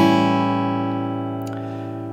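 An A7 chord on an acoustic guitar, strummed once from the A string downwards and left to ring out, fading slowly.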